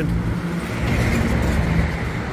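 Medium box truck driving past close by on a city road, its engine running steadily over general traffic noise.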